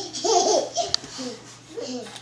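Young children laughing, a longer burst of laughter in the first half-second and a shorter one near the end, with a single sharp click about a second in.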